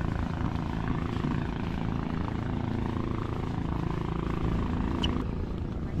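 A boat's engine running steadily, a low even drone, with the boat under way on the sea.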